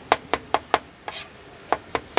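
Kitchen knife chopping brown mushrooms on a cutting board: quick, even knocks of the blade on the board, about five a second, broken by a short swish a little past halfway before the chopping resumes.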